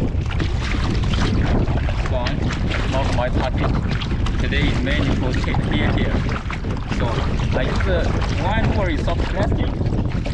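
Wind buffeting the microphone as a plastic sit-on-top kayak is paddled over choppy water, with repeated short splashes and water slapping at the hull.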